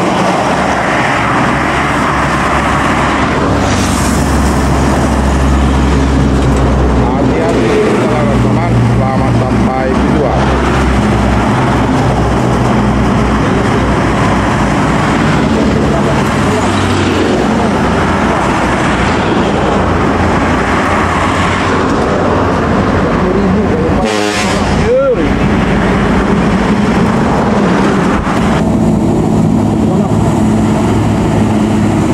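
Highway traffic: diesel buses and trucks driving past, with continuous engine noise and tyre noise on the road. About three-quarters of the way in a short pitched sound rises and falls.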